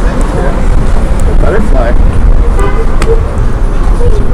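Outdoor street noise with a heavy low rumble throughout, faint voices, a brief pitched tone about two and a half seconds in and a sharp click just after.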